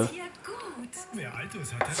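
Small plastic clicks from a table radio's controls as a lightly detented rotary knob and push-buttons are worked to call up the preset station list.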